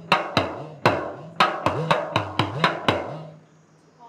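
An edakka, the Kerala hourglass drum, struck with a stick about ten times in quick succession. Its low tone swoops down and back up in pitch as the lacing is squeezed and let go. The playing stops about three seconds in.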